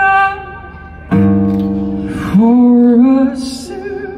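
A man sings live to his own acoustic guitar. A held note ends just after the start, a guitar chord is struck about a second in, and then the voice slides up into another long note with vibrato.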